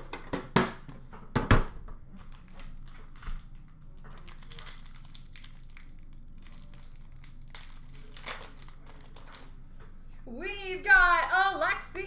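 Foil hockey card pack wrappers crinkling and cards being handled, with sharp crackles in the first two seconds and quieter scattered rustling after. A voice starts speaking near the end.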